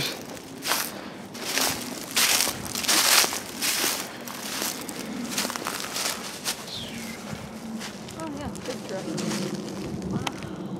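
Footsteps crunching over dry pine needles and sticks on a forest floor. A run of louder steps comes in the first four seconds, then quieter shuffling.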